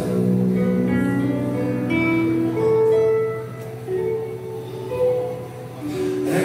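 Instrumental music with no singing: a passage of long held notes, each changing to the next about once a second.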